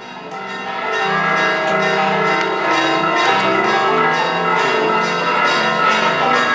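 Bells ringing in a continuous peal of many overlapping, sustained notes, swelling in over the first second and then holding steady.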